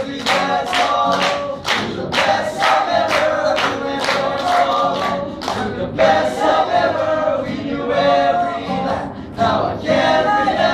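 Male a cappella ensemble singing a pop arrangement, with a steady beat of sharp percussive hits about twice a second under the voices.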